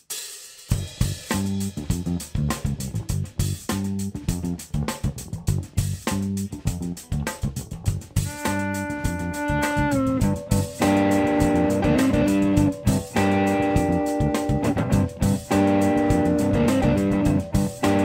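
Live blues-rock trio playing a song's instrumental intro: drums with cymbals and electric bass lay down a steady groove, and electric guitar comes in with held notes about eight seconds in.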